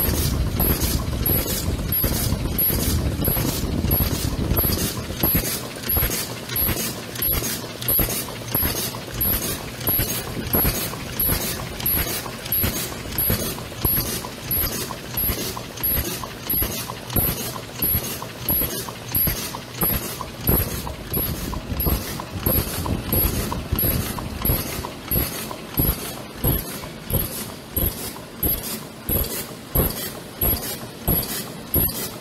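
LF 90 paper cup forming machine running, its mechanism cycling in a steady rhythm of about one and a half strokes a second, with a short high tone on each stroke. There is a heavier low rumble for the first few seconds.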